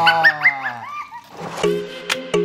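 A man's voice draws out a sung "do" that slides down in pitch, with short rising squeals over it. About a second and a half in, background music of short plucky synth notes starts.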